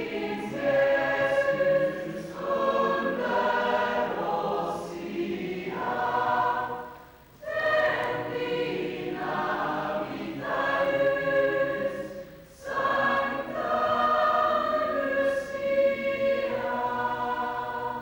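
Choir singing a Lucia procession song in long held phrases, with short breaks about seven and twelve seconds in.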